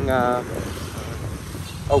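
Low wind rumble on the microphone with road and traffic noise while riding along a highway, in a pause between stretches of a man's speech.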